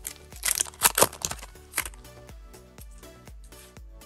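Foil wrapper of a Pokémon trading card booster pack crinkling as it is torn open: several sharp rustles in the first two seconds, then quieter. Steady background music runs underneath.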